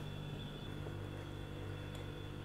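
Faint steady background hum and hiss with no distinct sound events: room tone.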